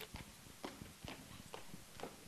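Faint footsteps on a hard floor, irregular soft knocks about two a second, in a large hall.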